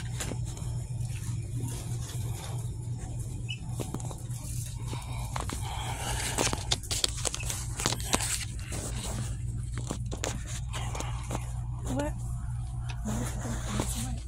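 Inside-store ambience: a steady low hum runs under faint, indistinct voices. A cluster of sharp clicks and rustles falls around the middle, typical of items or packaging being handled.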